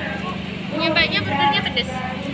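People talking, with a steady low mechanical hum underneath.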